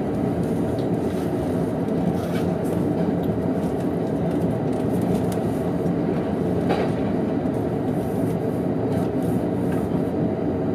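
JR East E231 series electric train running at speed, heard from inside its Green car: a steady rumble of wheels on rail with an occasional faint click, one a little sharper about two-thirds of the way through.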